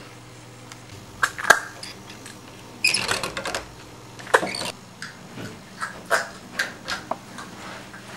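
Lever door handle rattling and the latch clicking sharply, followed by a run of short, soft taps about twice a second.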